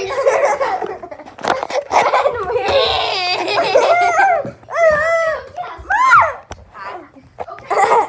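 Children laughing hard, with two high-pitched laughs about five and six seconds in.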